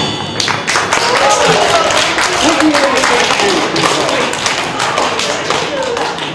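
Audience clapping irregularly with voices calling out, at the end of a live band's song.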